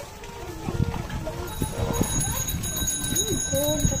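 Several women's voices talking over one another. A steady high metallic ringing joins about halfway through.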